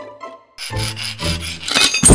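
A sawing sound effect: a few rough saw strokes, starting about half a second in, to go with a saw cutting through a padlock, over light background music.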